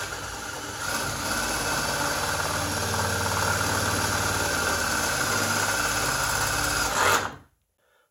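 Power drill running steadily as it bores a hole through the car's sheet-metal body for a riv-nut. It builds up over the first second, holds an even pitch for about six seconds, then stops near the end.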